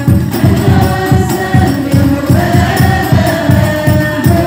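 A group of voices singing a sholawat, an Islamic devotional song in praise of the Prophet, in hadrah style over a quick, steady beat of rebana frame drums.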